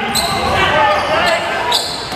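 Basketball bouncing on a gym floor during a fast break, with two sharp knocks, and players' voices calling out in the large gym.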